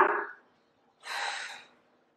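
A woman's short, audible breath about a second in, a soft hiss lasting under a second, taken in time with a Pilates breathing cue.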